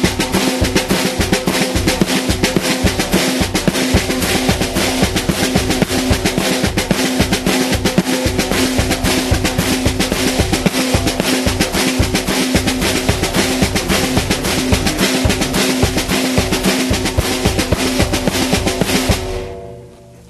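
Drum kit playing the train beat: a steady stream of fast snare-drum strokes with accents, the hi-hat on the upbeats and the bass drum first on two beats per measure, then on four, twice as fast. The playing stops near the end.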